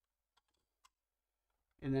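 A couple of faint, short clicks as scale-model parts are handled and held against the model body, then a man starts speaking near the end.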